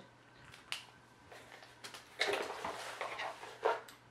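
Handling of art pens and their packaging: a sharp click under a second in, then bursts of rustling from about two seconds in.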